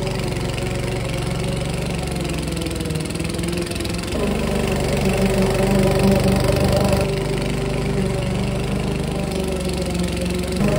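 Walk-behind petrol rotary lawn mower running steadily while cutting grass; its engine note shifts and grows louder about four seconds in, and shifts again around seven seconds.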